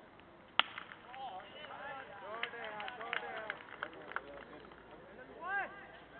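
A cricket bat striking a leather ball with one sharp crack, about half a second in. Men's voices shouting calls across the field follow it.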